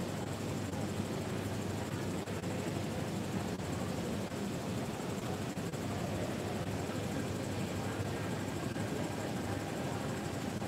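Steady, even background noise of an underground metro station platform, with no distinct events.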